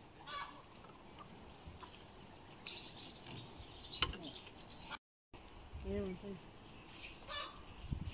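Plastic packaging crinkling and pinwheel parts clicking as a ladybird pinwheel is unpacked and assembled, with one sharp click the loudest, over a steady high insect drone. After a brief dropout, a short pitched call sounds, like a fowl's.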